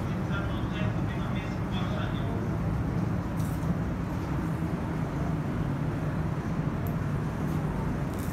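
Steady low rumble of indoor background noise, with faint, indistinct voices in the first two seconds and a few light clicks later on.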